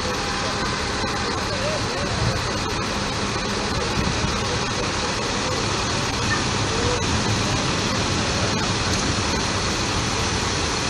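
Steady road-traffic noise with a heavy Iveco tow truck's engine running as it moves slowly through floodwater, under a constant hiss.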